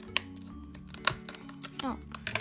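Sharp clicks of a clear plastic blister package being handled and pried at, two louder ones near the start and about a second in, over background music.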